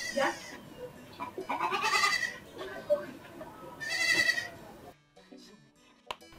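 A goat bleating twice, the calls about two seconds apart.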